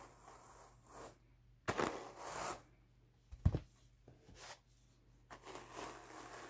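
Wooden Howard Brush hand carders drawn across each other through Jacob wool: several short scratchy brushing strokes, with a sharp knock about halfway through as the carders meet.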